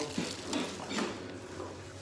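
Plastic bag rustling and crinkling in a few short bursts as a bagged manual is pulled off the side of a new dehumidifier.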